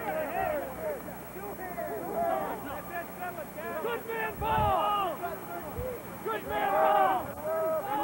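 Several voices shouting and calling out over one another from the sideline, loudest about seven seconds in, with a brief low thump about halfway through.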